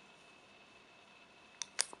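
Quiet room tone, then two short sharp clicks close together near the end as a small plastic tab is pulled off the end of an aluminium Apple Wireless Keyboard by its power button.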